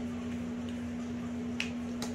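Steady low background hum with one sharp click about one and a half seconds in, from a whiteboard marker being handled.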